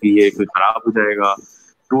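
A voice speaking in short broken fragments over a video call, with a brief faint high tone about a second and a half in.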